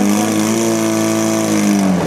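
Racing portable fire pump's engine revved high and held at a steady pitch, which sags slightly near the end as the revs start to come down.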